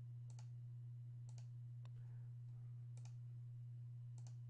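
Faint computer mouse button clicks, four of them about a second apart, most heard as a quick double click of press and release, over a steady low electrical hum.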